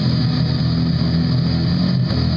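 Live rock band playing loud: electric guitars and bass guitar over drums, steady and unbroken.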